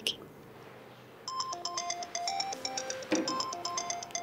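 Mobile phone ringtone: a quick melody of short electronic notes starting about a second in, an incoming call.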